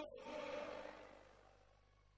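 A man's voice through a PA echoing and dying away in a large indoor arena, fading over about a second and a half to near silence with a low steady hum.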